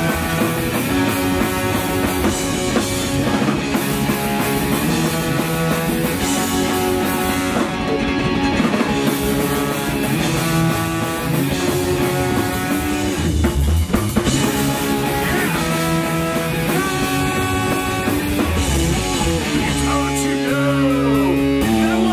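Live rock band with a ska-punk sound playing a song: electric guitar, electric bass and drum kit, with a trombone playing held notes over the top.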